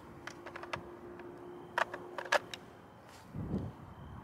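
Light clicks and rattles of a polymer WBP Kobold .223 AK magazine being handled in the magazine well of a Zastava M90 rifle: a few faint ticks about half a second in, then several sharper clicks around two seconds in. The magazine catch locks on this polymer magazine with very little sound.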